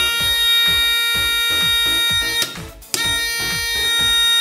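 Small 5 V electronic buzzer sounding a steady, high, buzzy tone as its circuit is switched by a rocker switch: it sounds for about two and a half seconds, stops for half a second, then sounds again. Background music with a beat plays underneath.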